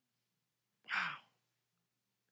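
A single short sighing breath from a man, about a second in and lasting about half a second.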